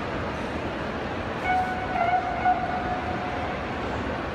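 Steady background noise of a large sports hall with spectators, and a held, steady high-pitched tone, like a long call or horn, starting about a second and a half in and lasting about two seconds.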